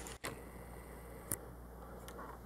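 Quiet room hiss with one small sharp click a little past halfway, from fingers handling the rear of a small die-cast metal model car.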